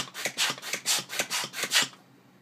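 Hand balloon pump being pumped rapidly, each stroke a short puff of air, about five a second, blowing dust out of a laptop's heat-sink vent. The strokes stop just before the end.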